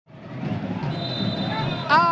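Stadium crowd noise fading in, with a referee's whistle held steady for about a second in the middle, signalling the kickoff. A commentator's voice cuts in at the very end.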